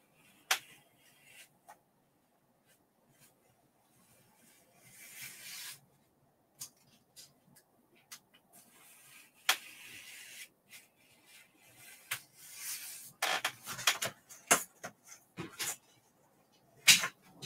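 Craft knife cutting through foam board along the edge of a vinyl print: short, faint scraping strokes and scattered sharp clicks, coming thick and fast near the end as the board is handled.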